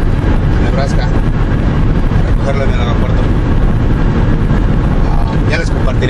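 Steady road and engine noise inside the cabin of a vehicle moving at highway speed, a constant low rumble with no change in pace.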